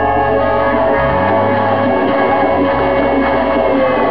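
A live band playing, with electric guitar and bass guitar over drums: long held notes ring over low bass notes that change every second or so.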